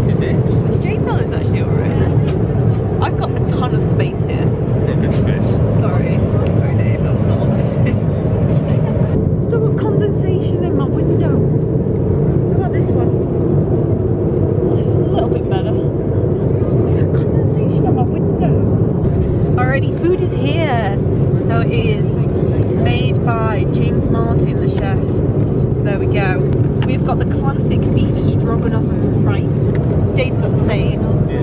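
Jet airliner cabin noise in cruise: a steady low drone of the engines and airflow. Quiet voices talk over it in the second half.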